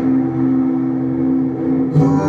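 A sustained synthesizer chord played on a ROLI Seaboard RISE 49 keyboard, held steady with a buzzing, droning tone.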